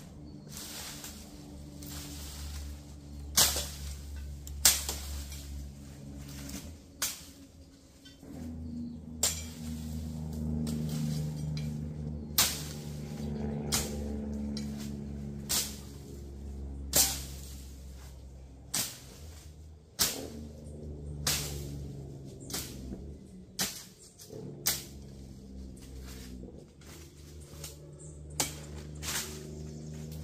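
Machete chopping through brush and weeds: sharp cutting strikes every second or two, irregularly spaced, some much louder than others.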